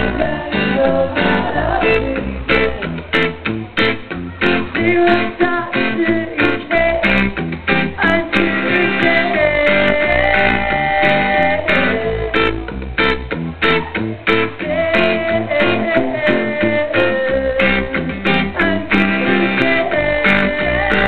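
A live rock band playing an instrumental passage: a drum kit keeps time under bass guitar and an electric guitar lead of held notes that bend up and down.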